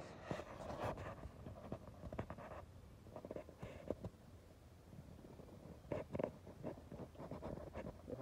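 Rustling and scattered short clicks and knocks, the handling noise of a phone being moved around by hand.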